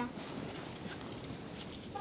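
Faint, soft, irregular rustling of snow being wiped off a car's side by a gloved hand.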